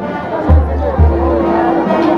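Procession band music: two deep drum beats about half a second apart, each ringing on low, with a held note coming in after them, over a murmuring crowd.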